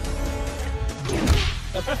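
Film soundtrack music with a single loud impact sound effect, a punch hit, about a second in.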